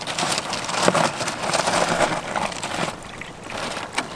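Lava rock gravel crunching and clattering as hands dig into it and shift the stones, a dense run of small clicks that eases off about three seconds in.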